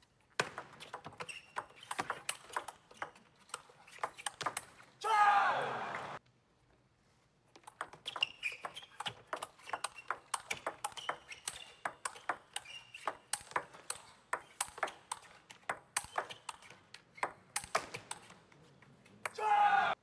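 A table tennis ball clicking sharply off the table and the rackets through two fast rallies. Each rally ends with a loud shout, about five seconds in and again just before the end, as a point is won.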